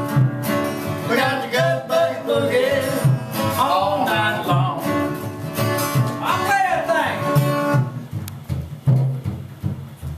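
Old-time boogie tune on acoustic guitar and a gut bucket washtub bass, its low notes pulsing steadily under the strumming, with a man singing. The singing stops about eight seconds in and the guitar and bass play on.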